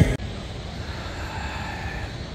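Background music cuts off right at the start, leaving a steady low outdoor rumble with a faint whine that swells and fades about a second in.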